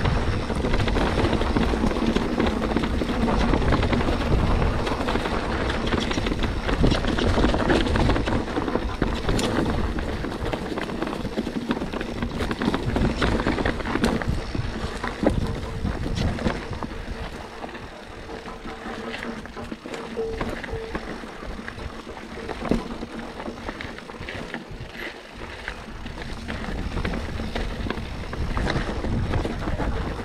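Santa Cruz Bronson mountain bike riding down a rocky dirt trail: tyres crunching over dirt and loose stones, with constant rattling and knocking from the bike and wind on the microphone. It is louder and rougher in the first half, then eases for a stretch before picking up again near the end.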